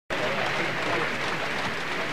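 Concert audience applauding steadily, with a few voices in the crowd.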